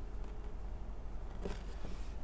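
Faint handling and scraping as a small blade cuts through the outer jacket of a shielded video cable, over a steady low hum. One brief click about one and a half seconds in.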